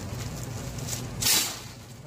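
A low steady hum with one short rustling noise a little over a second in.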